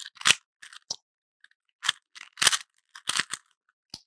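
Rubik's Cube being twisted by hand: a run of short, irregular plastic clicks and rasps as the layers are turned through a solving algorithm.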